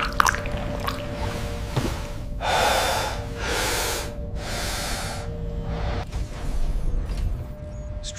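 A low, steady ambient music drone, with three loud, breathy gasps about two and a half to five seconds in.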